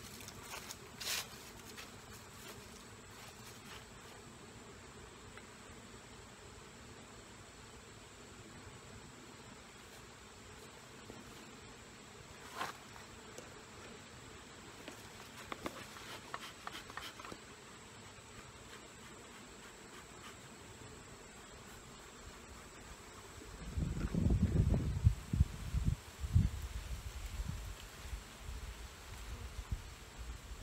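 Honeybees buzzing around an open hive, a faint steady hum, with a couple of brief clicks. For the last six seconds or so, louder irregular low rumbles and thumps come in over it.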